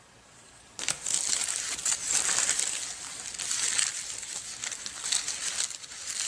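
A stylus point scratching over vellum tracing paper, with the sheet crinkling, as a design is traced through white graphite transfer paper onto a board. It starts about a second in after a brief quiet moment, a dry, uneven scratching that varies in strength.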